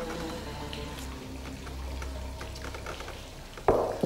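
Soft background music of held tones, with small clinks of cups and dishes at a dinner table. Near the end comes one sudden loud hit.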